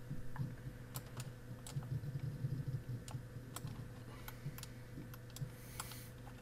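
Scattered, irregular clicks of a computer mouse and keyboard being worked, over a faint steady hum.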